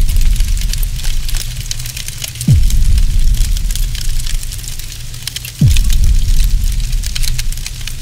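Cinematic end-card sound effects: deep impact hits that drop sharply in pitch, about two and a half and five and a half seconds in. Under them runs a low rumble with fire-like crackling.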